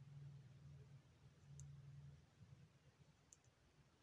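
Near silence: knitting needles giving two faint clicks as stitches are worked, over a low hum that fades out about halfway through.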